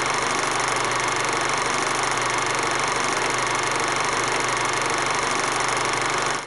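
A steady, unchanging mechanical whirr with a hiss and a faint constant hum, like a machine running at an even speed.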